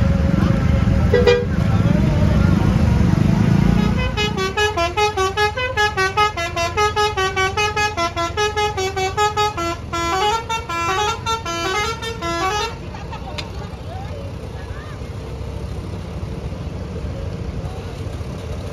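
An Indonesian 'telolet' multi-tone bus horn playing a quick tune of short stepping notes, starting about four seconds in and stopping sharply near the two-thirds mark. Before it, the loud low rumble of a bus's engine passing close.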